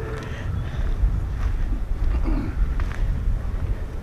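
Wind buffeting the microphone: a steady low rumble. Two faint crunches of footsteps on the rocky dirt trail come about a second and a half apart.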